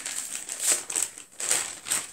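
Brown kraft-paper wrapping crinkling in several short bursts as a wrapped book is unwrapped by hand.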